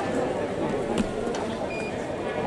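Voices and chatter in an indoor fencing hall, with a sharp click about a second in and a brief high electronic beep near the end.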